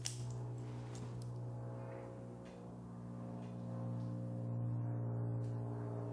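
A man humming one long, low, steady note, a meditation-style 'om'.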